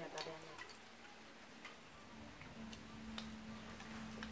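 A few scattered light clicks of chopsticks and spoons against bowls and plates. A faint steady hum comes in about two and a half seconds in.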